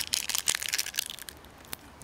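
Adhesive tape being handled and pressed around a fingertip: crinkling and crackling, densest in the first second, then sparser and fainter.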